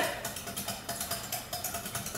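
Wire whisk beating milk and instant pudding mix in a bowl, a quick, even rhythm of light scrapes and taps against the bowl as the pudding begins to thicken.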